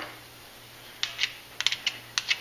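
Quick, irregular light clicks starting about a second in, from a small steel thread tap and its metal shavings being handled in the fingers.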